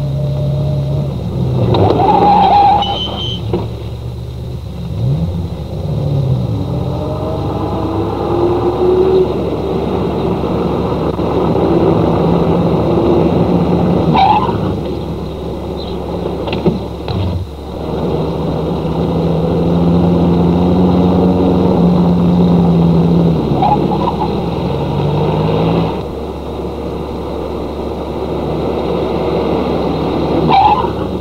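Motor cars in town traffic: engines running and revving, their pitch stepping up and down as they speed up and slow, with a few short sharp sounds in between.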